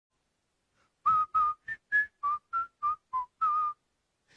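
A person whistling a short tune of nine separate, breathy notes. The tune steps up and then falls back, and the last note is held a little longer.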